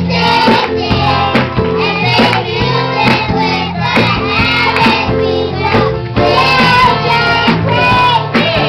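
Small children's choir singing a gospel song into microphones, backed by a live band with a drum kit keeping a steady beat under low sustained notes.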